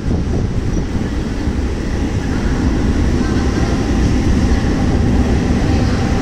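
Mumbai suburban local electric train running into a station, heard from the open doorway: a steady, loud rumble of the wheels and coach on the track. A faint steady hum joins in a little over two seconds in.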